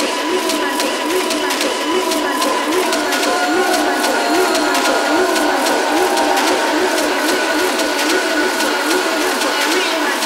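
Electronic dance music in a breakdown with the bass filtered out. A thin mid-range figure repeats about twice a second over regular hi-hat-like ticks, and sustained high tones come in about three seconds in, building toward the drop.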